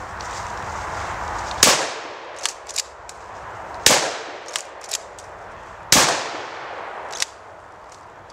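A shotgun fired three times, about two seconds apart, each loud shot trailing off in a short echo. Smaller sharp clicks fall between the shots, in pairs after the first two.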